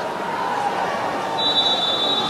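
Steady crowd noise of spectators in a swimming arena. About two-thirds of the way in, a steady high whistle starts and holds: the referee's long whistle calling the swimmers up onto the starting blocks.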